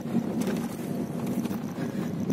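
Steady low hum of a car driving on the road, the engine and tyre noise heard from inside the cabin.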